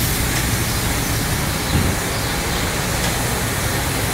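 Steady rushing noise of grain pouring out of a trailer into a receiving-pit grate, over a low machinery hum. A brief low thump comes a little before the middle.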